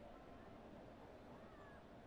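Near silence: faint room tone of a large indoor space, with a faint, brief gliding call about one and a half seconds in.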